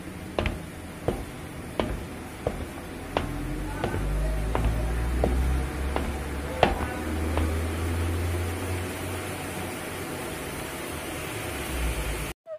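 Footsteps on a hard floor at a walking pace, about one every 0.7 seconds, stopping about seven and a half seconds in, over a steady low hum.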